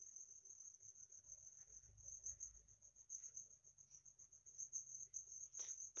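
Near silence with a faint, steady, high-pitched pulsing chirp of crickets, and a few faint scratches of a pen writing on paper.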